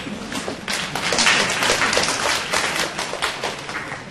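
Audience applauding: many hands clapping together, swelling in the first second and dying away near the end.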